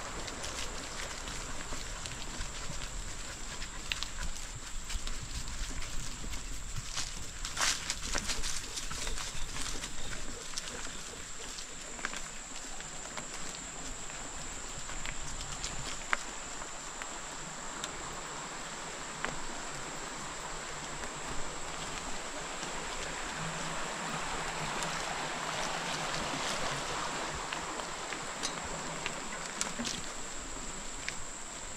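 Bicycle tyres rolling along a dirt farm trail: a steady crunching haze with scattered small ticks and crackles, under a steady high-pitched tone.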